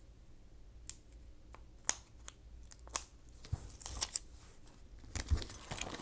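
Faint handling of paper sticker sheets: scattered light ticks and crinkles as small sticky labels are peeled off the sheets.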